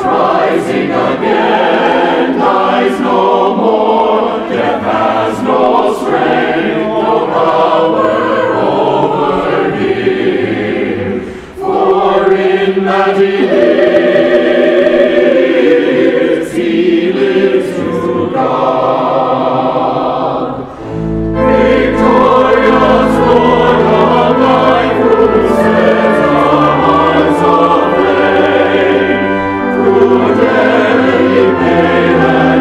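Church choir singing a hymn in parts, pausing briefly between phrases twice. Low sustained bass notes join about two-thirds of the way through.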